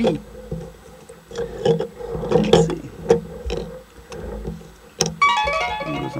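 Light taps and clicks of small cardboard puzzle pieces being set down and slid about on a table, then a tune of pitched notes starting about five seconds in.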